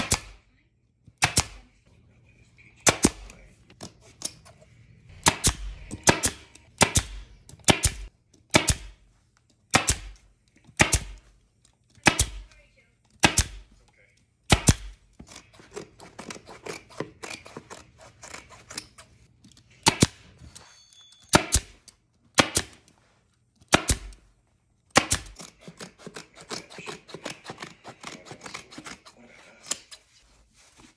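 Pneumatic upholstery stapler firing staples through rug fabric into a wooden footstool seat board: single sharp shots about a second apart, stopping for a few seconds in the middle. Between and after the shots, scissors cut through the rug's thick woven edge with a rustling crunch.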